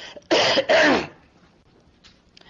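A man coughing to clear his throat: two loud, quick coughs in the first second.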